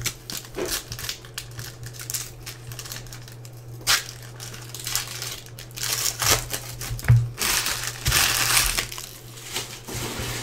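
Foil wrapper of a Panini Certified basketball card pack crinkling as it is handled, with scattered clicks of cards and packs on the table. The crinkling is densest in the second half.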